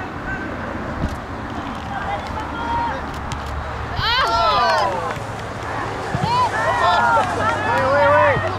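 High-pitched shouting voices on a soccer field: one loud burst of yelling about four seconds in and more shouts from about six seconds on, over a steady low outdoor background.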